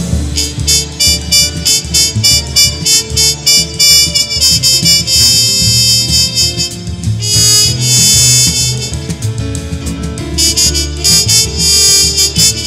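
Live jazz band playing: a drum kit keeps a busy, steady beat under a wind-instrument lead over bass and piano, with one long held note about halfway through.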